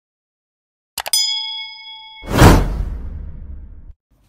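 Subscribe-button animation sound effects: a few quick mouse clicks about a second in, a bright bell ding that rings for about a second, then a loud whoosh that swells and fades away before the end.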